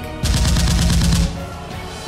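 A rapid burst of automatic gunfire, a fast run of shots lasting about a second, starting a quarter of a second in, over background music.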